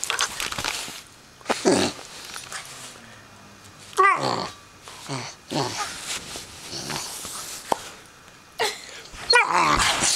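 Greater Swiss Mountain Dog puppy making play noises: a handful of short growly calls that slide down in pitch, with bedding rustling between them.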